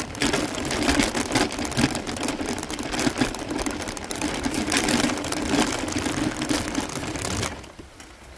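Wheels rolling over a gravel road with a dense, continuous rattle and clatter and a steady hum underneath; the rolling stops suddenly near the end.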